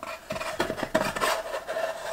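Small unfinished wooden crate sliding and rubbing against pine slats as it is pushed into place, with irregular scraping and a few light knocks of wood on wood.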